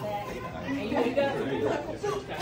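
Indistinct chatter: several voices talking at once, no words clear.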